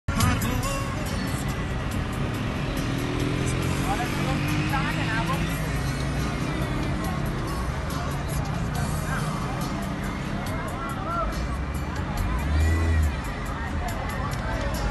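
Car engine and road noise heard from inside the car. The engine pitch rises slowly a couple of seconds in, voices from a crowd outside come and go, and a louder low rumble comes near the end.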